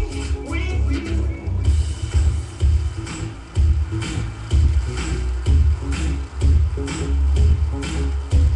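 Electronic dance music with a heavy, steady bass beat. Singing is heard for about the first second and a half, then drops out and leaves the beat.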